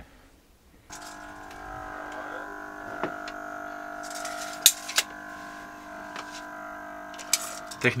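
A steady machine hum made of several fixed tones starts abruptly about a second in, from equipment in a boat's technical room, with a few sharp clicks and knocks around the middle.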